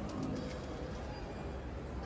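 Faint ambience of a busy airport departure hall: a steady low hum with soft, indistinct background noise and a few faint low tones early on.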